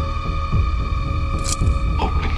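Dark ambient soundtrack music: a sustained drone of steady high tones over a low pulse that keeps repeating, with a short hiss about one and a half seconds in.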